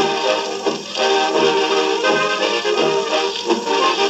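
Jazz band music with brass playing back from a shellac 78 rpm record on a turntable.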